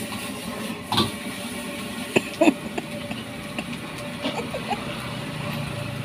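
Stir-frying in a large steel wok over a gas burner: a steady burner roar and sizzle, with a few sharp metal clanks of the spatula against the wok, about one second in and twice more around two seconds in.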